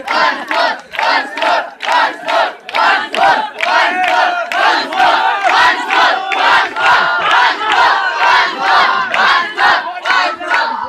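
A large crowd of children shouting together in a fast, even chant, about two to three shouts a second.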